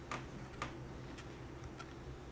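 A few faint, scattered clicks of a tiny Phillips screwdriver working a small servo screw into a 3D-printed robot chassis.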